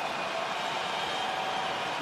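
Steady arena background noise during a free-throw attempt: an even crowd-and-room hum with no distinct cheers, bounces or whistles.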